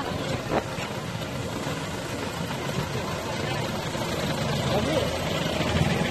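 Road traffic: vehicle engines running close by as cars and a pickup pass slowly, growing a little louder toward the end, with voices in the background.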